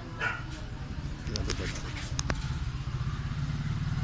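An engine idling steadily with a fast low pulse that grows a little stronger after about a second, with a few sharp clicks near the middle.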